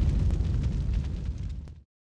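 Tail of a deep cinematic boom sound effect: a low rumble dying away that cuts off shortly before the end.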